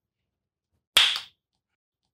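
A single sharp crack, like a slap or a whip crack, about a second in, dying away within a fraction of a second; otherwise silence.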